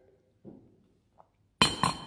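A ceramic coffee mug set down on a table: a sharp clink with a brief ring, coming in two quick knocks near the end.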